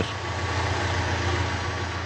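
Small car's engine running at a low, steady idle as the car creeps forward into a tight space.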